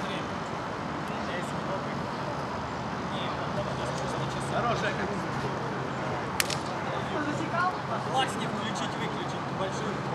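Outdoor ambience: a steady hum of city traffic with distant players' voices, and a single sharp click about six seconds in.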